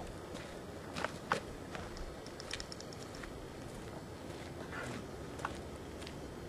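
A person's footsteps on dry grass, irregular steps with the sharpest couple about a second in.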